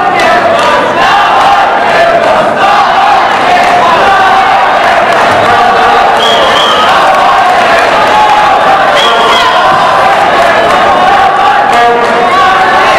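Crowd of judo spectators in an arena shouting and cheering, many voices at once, loud and steady.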